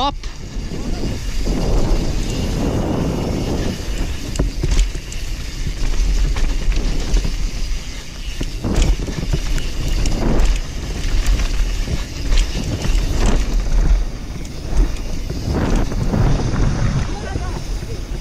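Wind rushing over the camera's microphone as a YT Capra mountain bike descends a dirt trail at speed, with its tyres rumbling on the dirt and the bike clattering over roots and bumps, including a few sharp knocks.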